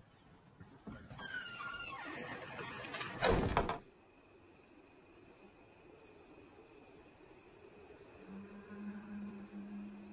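A door creaking with a wavering pitch, then a loud bang about three seconds in that is the loudest sound. After it comes night ambience: an insect chirping about twice a second over a faint steady high tone, with a low sustained drone coming in near the end.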